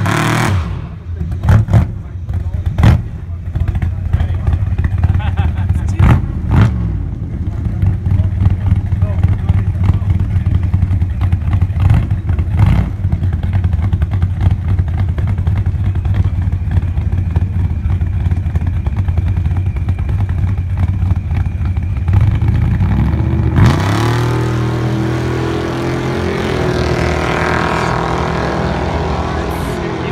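Dodge Viper and Ford Mustang at the start line: the Viper comes off a burnout, then both engines idle with a few sharp cracks in the first dozen seconds. About three-quarters of the way in, both cars launch, their engine notes rising through the gears and fading as they pull away.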